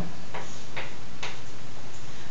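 Chalk tapping and scraping on a blackboard: about three short, sharp strokes as small arrows are drawn.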